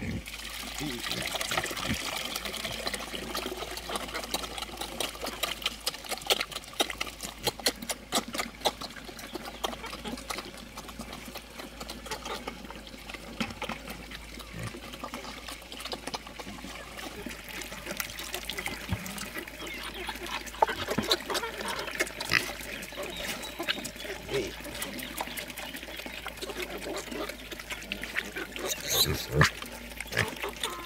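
Liquid pig feed poured from a bucket into a long trough near the start, then pigs grunting and feeding at the trough amid many small knocks and clicks.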